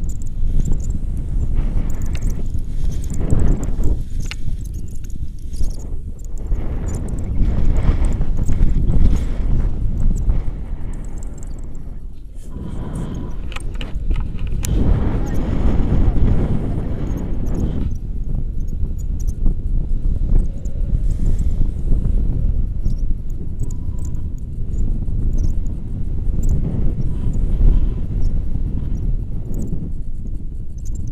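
Wind buffeting the camera microphone during a tandem paraglider flight: a loud, low rumble that swells and dips.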